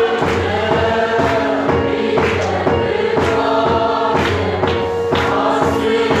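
A choir singing a Christian gospel song with instrumental accompaniment: held sung notes over a steady beat of about two strokes a second.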